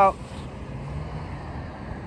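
A man's word ends at the very start, then a steady low outdoor rumble of background noise.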